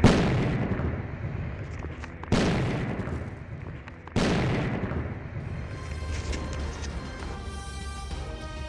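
Three deep booms about two seconds apart, each starting suddenly and dying away slowly, then music with sustained tones coming back faintly in the last few seconds.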